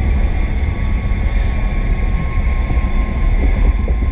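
Steady road and engine noise inside a vehicle's cabin at highway speed, a continuous deep rumble with faint steady whines above it, muffled by the GoPro's enclosing case.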